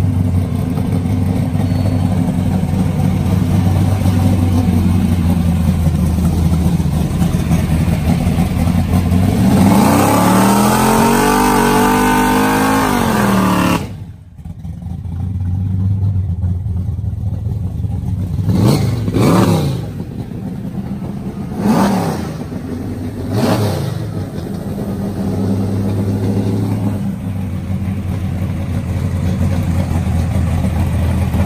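Big-block Chevy V8 of a drag-racing Chevelle station wagon idling, then revving up in one long rise and dropping back about ten seconds in. After a cut it idles again with three quick throttle blips before settling back to idle.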